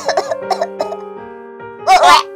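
A voice actor coughing several times in quick, short bursts that die away within the first second, over background music with held notes. A louder burst of voice comes right at the very end.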